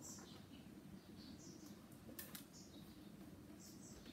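Faint, high-pitched squeaks and a couple of light clicks from a rubber refrigerator door gasket being pulled by hand out of its retaining slots in the door liner.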